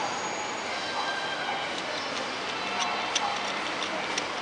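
Indoor shopping-concourse ambience: a steady background wash with faint distant voices, and a scatter of light, sharp clicks in the second half.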